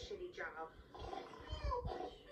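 Voices and vocal sounds from the puppet comedy playing on the TV, heard through its speaker.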